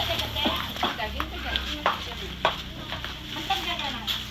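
Scattered light clicks and crinkling of plastic bags and palm-leaf offerings being handled, with faint voices in the background.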